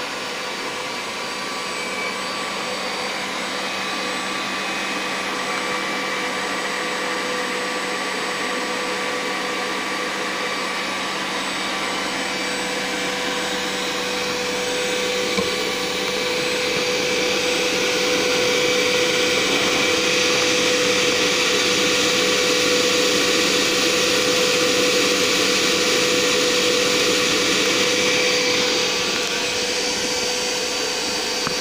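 The 80 mm electric ducted fan of a Freewing L-39 model jet, driven by an inrunner motor, running with a steady whine and rush of air. It gets louder about halfway through, holds, and eases off a little near the end.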